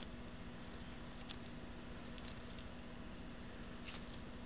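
Gloved hands working a tube sock over a plastic glue-pen body: faint rubbing with a few light clicks, over a steady room hiss.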